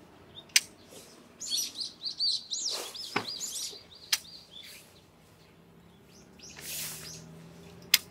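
A songbird sings a quick run of high chirps through the first half. Around it, sharp clicks and soft rustling come from the canvas and poles of a tent being raised.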